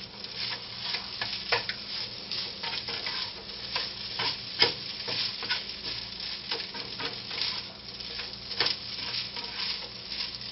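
Fried rice sizzling in a nonstick frying pan while a slotted spatula stirs and tosses it, with frequent short scraping and tapping strokes against the pan. The sharpest knock comes about halfway through. A low steady hum runs underneath.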